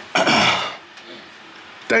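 A man clearing his throat once, a short rough burst of about half a second, followed by a pause before he speaks again near the end.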